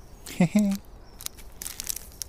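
Paper seed packets rustling and crinkling as they are handled. A brief wordless vocal sound about half a second in.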